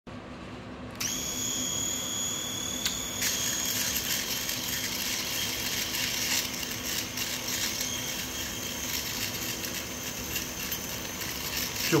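Electric shaver switched on about a second in, running with a steady high whine. From about three seconds in it is cutting beard stubble on the chin, adding a dense crackling buzz over the motor.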